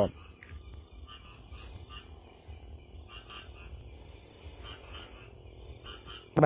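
Faint chirping of crickets at night, short chirps repeating a few times a second over a low steady rumble.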